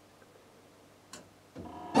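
Quiet handling with a small sharp click about a second in, then near the end the laser cutter's head carriage sliding along its rail as it is accidentally knocked.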